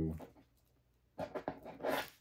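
Faint handling noises from working a doll's miniature toy umbrella: small clicks and rubbing as a loose rib is pressed back into its socket. These start about a second in, after a short near-silent pause.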